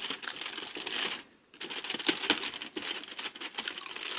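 Foil wrapper of a small advent-calendar chocolate crinkling as it is unwrapped by hand, in dense irregular crackles that stop briefly a little over a second in.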